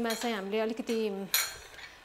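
A woman speaking for about a second, then one sharp metallic clink of stainless-steel kitchen utensils, a whisk and spoons, being picked up and knocked together.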